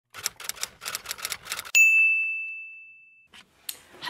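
Typewriter sound effect: a quick run of about a dozen key clicks, then, just under two seconds in, a single bright bell ding that rings and fades over about a second and a half. Two faint clicks follow near the end.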